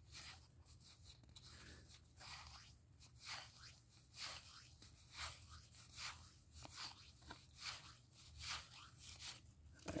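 Faint, short scrapes of cardboard baseball cards being slid off a stack one at a time, roughly one or two a second.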